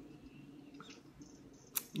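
Quiet room tone with a few faint ticks, then one sharp click shortly before the end.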